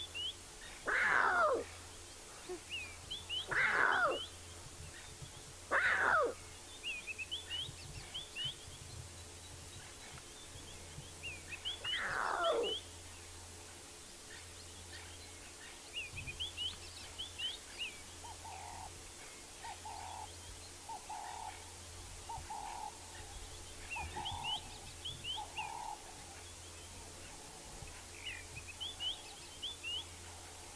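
Newborn lion cub calling for its mother, a contact call: four high mews, each falling steeply in pitch, three close together in the first six seconds and one more about twelve seconds in. Small birds twitter throughout, and later comes a soft series of about six shorter, lower calls.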